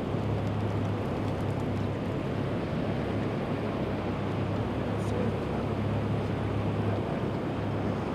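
Boat motor running steadily at low speed under the fishing boat, a constant low hum with water and wind noise around it. A faint click comes about five seconds in.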